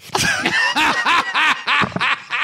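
Several men laughing loudly together at a joke, in quick repeated pulses of overlapping voices. The laughter starts right after a brief pause.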